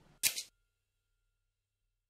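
A short, sharp editing transition sound effect, one burst about a third of a second long with two quick peaks, followed by dead silence.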